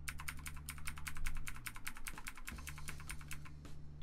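A computer keyboard's Delete key tapped rapidly and repeatedly during boot to enter the BIOS setup. The clicking stops shortly before the end.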